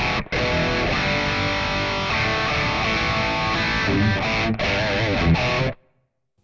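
Stratocaster-style electric guitar played through a NUX MG-300 multi-effects amp modeller, a short passage of notes and chords that cuts off suddenly near the end.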